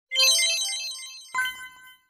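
Short, bright synthesized chime jingle for a channel logo intro: a quick run of high notes, then a second ringing chime a little over a second in that fades out.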